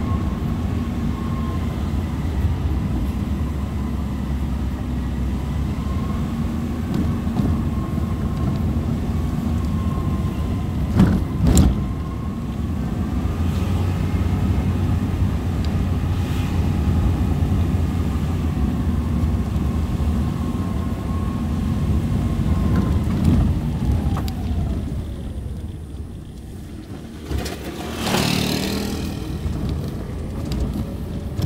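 Car engine running with road rumble, heard from inside the cabin, with a thin steady whine that wavers slightly in pitch. A sharp knock comes about eleven seconds in. Near the end the sound dips, then a brief rushing noise follows.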